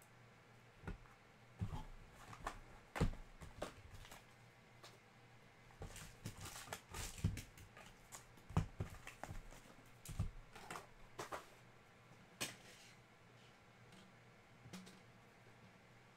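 Foil trading-card packs and their cardboard box being handled: irregular crinkles of the wrappers and light taps as packs are set down on the table, busiest in the middle.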